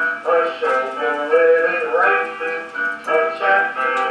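A song with a singing voice over instrumental accompaniment, played back through a television's speaker.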